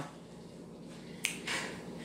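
Quiet room tone broken by one brief, sharp click a little over a second in.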